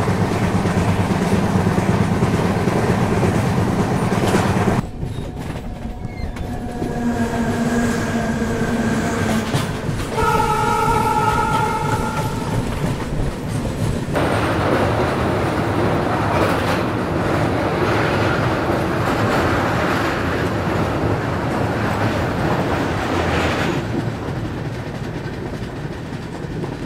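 Passenger train running at speed, heard at an open door: steady wheel and rail noise with clickety-clack over the rail joints. About ten seconds in, a train horn sounds for about two seconds.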